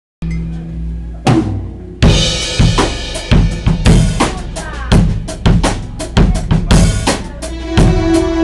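A live band with drum kit and guitars opens a song. A held chord sounds first, with a single drum and cymbal hit about a second in. About two seconds in the full band comes in, the drums keeping a steady beat.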